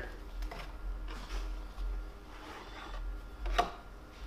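A small plastic holder being opened and handled, with faint rustling and light taps, and one sharp click about three and a half seconds in.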